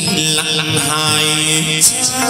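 Vietnamese chầu văn ritual music: a held, chanted vocal line over steady accompanying instruments, with one sharp percussion stroke just before the end.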